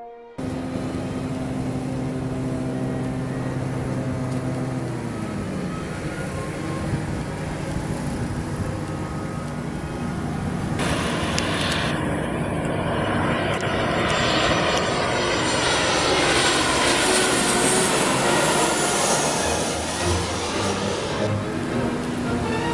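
Jet airliner engines: steady engine noise at first, then, after a sudden change about eleven seconds in, a louder rushing sound that swells as a plane passes overhead, with a high whine that falls in pitch near the end.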